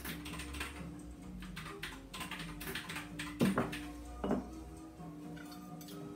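Light tapping and scraping of a spoon against a glass jar and small ceramic dish while scooping out very thick oil varnish, with two louder knocks about three and a half and four and a half seconds in. Faint music plays underneath.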